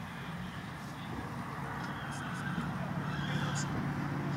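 A horse whinnies over a low engine rumble that grows steadily louder, with voices in the background.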